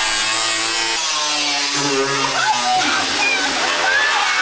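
Power saw cutting through the sheet-metal body panel of a Mercedes Sprinter van: a loud, steady motor run with a harsh high hiss of blade on metal, its pitch shifting a few times as the cut loads it.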